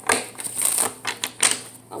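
A deck of tarot cards being shuffled by hand: a papery clatter broken by a few sharp snaps of the cards.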